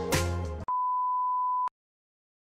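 Intro music with a beat cuts off abruptly, then a steady electronic beep, one unchanging pitch, sounds for about a second and stops sharply.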